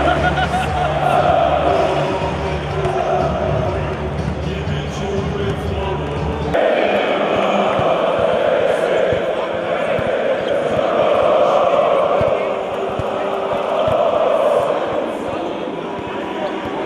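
Large arena crowd of basketball fans chanting together, echoing in the hall. A low steady hum under the chant cuts off abruptly about six and a half seconds in, and scattered low thumps are heard after that.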